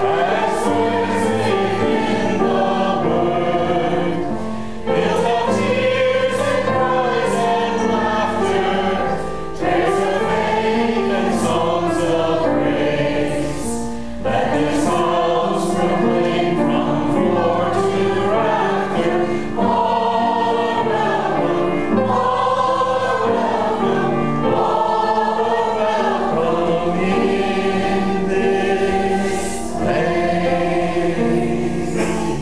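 A choir singing a sacred choral piece in long held phrases, with short breaks between phrases.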